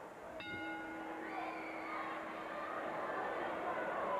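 A wrestling ring bell struck once about half a second in, its ring fading within a second or so, over the steady noise of an arena crowd.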